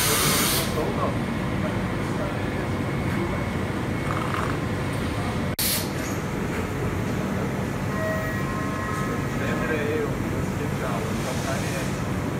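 FANUC Robodrill D21MiB5 vertical machining centre running inside its enclosure with a steady mechanical hum. A short hiss of spray stops within the first second. Near the end the spindle starts cutting under coolant.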